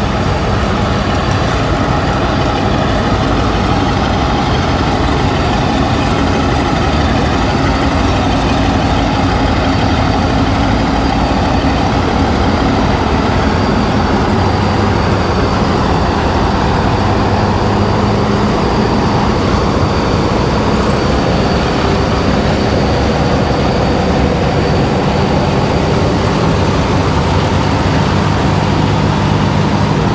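A heavy engine running steadily at idle, its pitch shifting a little now and then.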